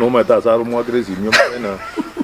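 A man talking, with one brief sharp sound about a second and a half in.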